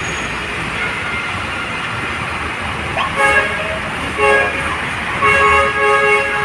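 Truck horns sound over the steady rumble of passing dump trucks: two short blasts about a second apart, then a longer blast near the end.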